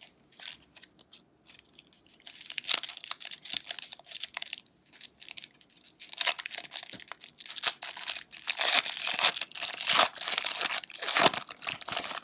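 The wrapper of a trading card pack being torn open and crinkled by hand, in irregular crackling bursts that grow busier and louder in the second half.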